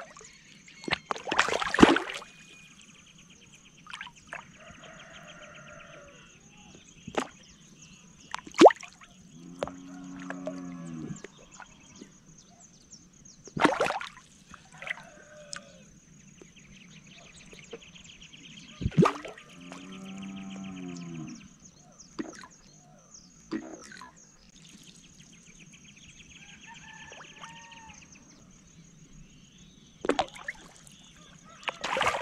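Fish splashing at the water's surface as it strikes at floating feed pellets. There are several sharp splashes, the loudest about two seconds in, with others near nine, fourteen and nineteen seconds.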